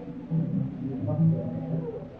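Voices of a congregation praying aloud together, with low, drawn-out pitched tones held for about half a second at a time.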